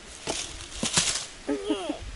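A long wooden stick dropped onto dry fallen leaves and gravel, giving a few brief crackling rustles, followed by a short voice near the end.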